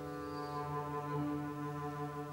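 Double bass holding a long, steady low bowed note, with piano accompaniment.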